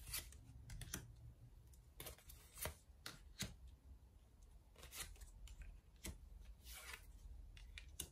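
Tarot cards being laid down one by one and slid into place on a mirrored glass tabletop: a string of faint, irregularly spaced taps and brushes.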